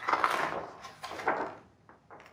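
Paper pages of a picture book being turned, two papery rustles: one at the start and a softer one a little after a second in.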